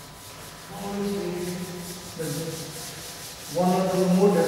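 Board duster rubbed in repeated strokes across a blackboard, wiping off chalk writing. A man's voice comes in under it and grows louder near the end.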